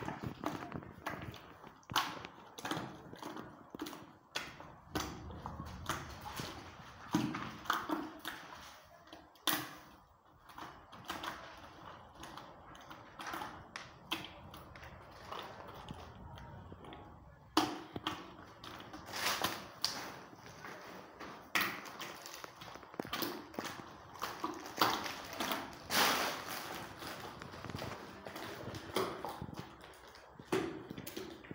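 Plaster of Paris and Home Charm wall filler being stirred by hand in a plastic bucket: irregular taps and knocks against the bucket's sides, with scraping in between.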